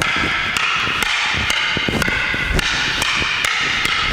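Rattan arnis sticks clacking against one another in a steady rhythm of sharp strikes, about two to three a second, as two sticks are played against one in a sinawali pattern.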